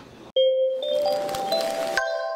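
Television channel logo sting: starting suddenly about a third of a second in, a swish with bell-like chime notes that enter one after another, climbing in pitch and ringing on together.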